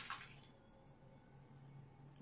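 Dry butterfly pea pod bursting open along its seam: a short, crisp crackle at the very start as the halves twist apart and fling the seeds. Then near silence with a faint low hum.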